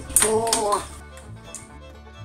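A short cry from an African grey parrot, about half a second long and bending down then up in pitch, over background music, with a couple of sharp knocks right at the start.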